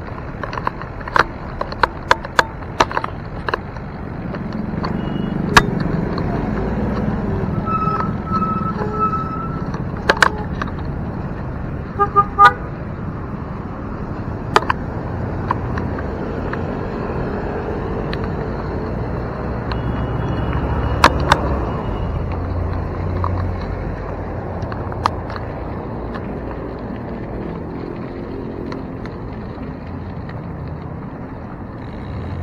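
Steady road and traffic noise heard from a moving bicycle, with sharp clicks and rattles from the bike over bumps. A horn toots in short blasts about eight seconds in and again about twelve seconds in.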